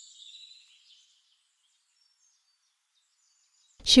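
Near silence: a faint high-pitched chirping trace fades away within the first second, then there is dead silence until a voice begins speaking near the end.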